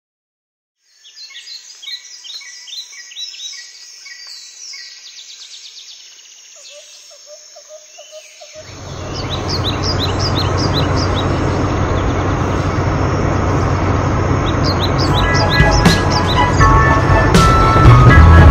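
Birds chirping in short repeated calls for the first several seconds. From about halfway in, a steady engine rumble comes in and grows louder toward the end as an animated off-road buggy approaches.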